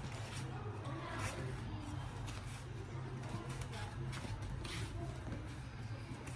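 Bare feet shuffling and sliding on foam gym mats in short, irregular steps during step-and-slide boxing footwork, over a steady low hum.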